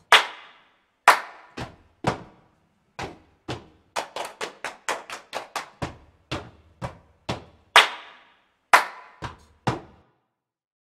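Hand claps and slaps beat out a rhythm, with a quick run of strikes in the middle and deeper thuds mixed in; they stop just before the end.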